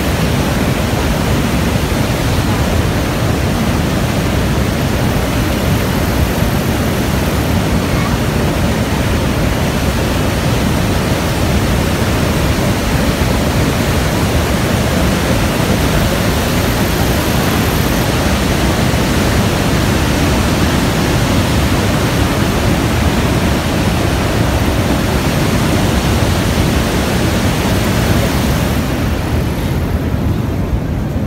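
Loud, steady rush of the Niagara River pouring over the American Falls and through the rapids at its brink, an even unbroken noise; it thins out shortly before the end.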